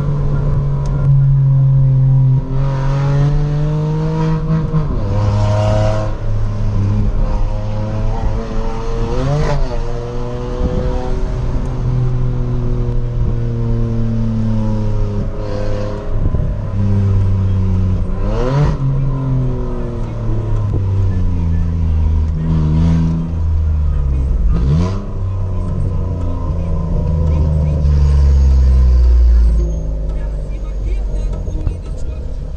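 Hyundai HB20's 1.0 three-cylinder engine, heard from inside the cabin through an opened exhaust cutout, accelerating through the gears. The note climbs and drops back at each shift, several times over, and ends in a deep, loud, steady drone.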